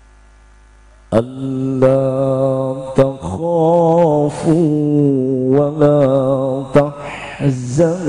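A man reciting the Qur'an into a microphone in melodic tilawah style. A steady low hum is heard first, then about a second in he begins a long, ornamented phrase whose pitch wavers and turns, held with hardly a break.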